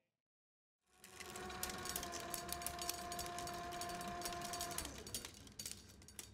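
A reel transport machine running: about a second in, a steady motor whine starts with a rapid clatter of ticks over it. The whine cuts off near the end while the ticking carries on more quietly.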